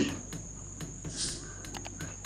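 Crickets chirping in the background: a steady, high, continuous trill, with a few faint clicks over it.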